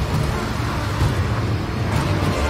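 A dense, steady low rumble from a film soundtrack, with a thick wash of noise over it and no clear beat or melody.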